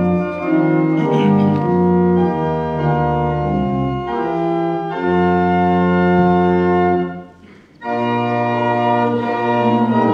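Organ playing a hymn tune in held chords that change every second or so, with a brief break between phrases about seven seconds in.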